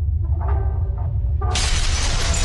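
Outro sound effect: a deep steady rumble, then, about one and a half seconds in, a loud crash of a wall shattering.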